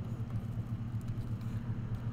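Steady low hum in the background, unchanging throughout, with no other clear event.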